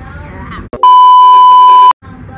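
Woman's speech, cut off abruptly about a second in by a loud, steady, high beep tone about a second long that stops just as suddenly: an edited-in bleep laid over the audio, of the kind used to bleep out a word.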